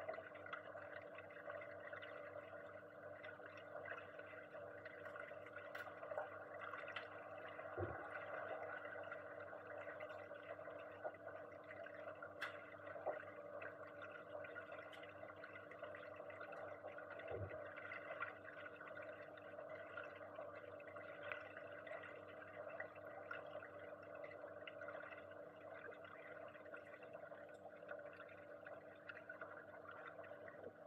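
Faint underwater ambience of a swimming pool, heard through a submerged camera: a steady hum with one held low tone, light crackling, and two soft low thumps, one about a quarter of the way through and one just past halfway.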